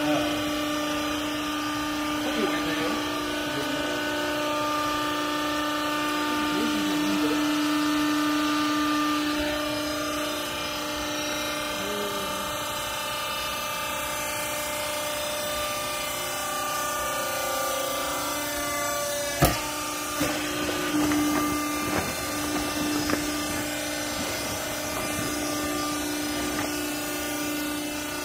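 Electric motor and hydraulic pump of a vertical used-clothing baler running with a steady hum, with a single sharp knock about two-thirds of the way through.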